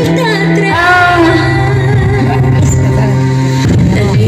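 Music with a voice singing a melody over instrumental accompaniment, a new sung phrase starting about a second in.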